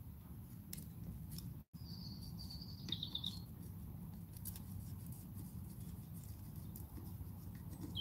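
Faint scratching and ticking of copper desoldering braid drawn across surface-mount pads under a soldering-iron tip, mopping up leftover low-melting-point solder, over a low steady room rumble. A short high chirp comes about two to three seconds in.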